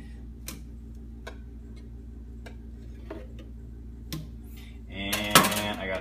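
Light, scattered clicks and taps of a metal wire whisk against a plastic blender jar as foam is skimmed off. Near the end comes a louder sharp knock together with a voice.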